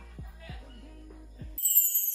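Quiet intro of an R&B song: a low held bass note with a few deep kick-drum hits that drop in pitch. Near the end it switches abruptly to a louder synth sweep falling from very high pitch.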